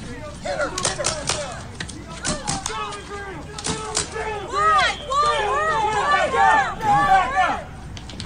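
Several people shouting and screaming in short, repeated cries that rise and fall in pitch, growing louder in the second half, with a few sharp cracks in the first half.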